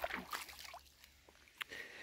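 A few faint splashes and sloshes of shallow pond water in the first second, as a caught fish is lowered in by hand and released.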